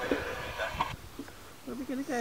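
A towel rustling as it is spread out by hand, with a voice starting near the end.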